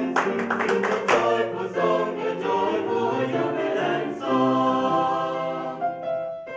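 Mixed-voice vocal ensemble singing, with rhythmic hand claps in time for about the first second, then the voices holding sustained chords.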